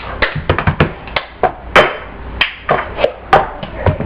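Cup song being played: hand claps and a plastic cup tapped and knocked down on a tabletop, a quick rhythmic series of sharp knocks and claps.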